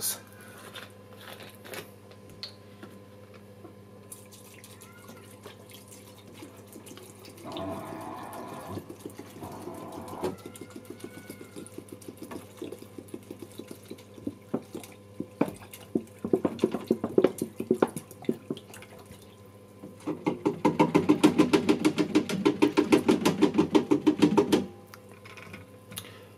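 Film bleach poured from a bottle into an open plastic developing tank, trickling and splashing in fits and starts, then gurgling in a rapid, steady stream for about four seconds near the end. Light clicks of handling the bottle come before the main pour.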